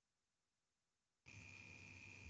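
Near silence: the audio drops out entirely, then faint microphone hiss with a thin, steady high whine returns just over a second in.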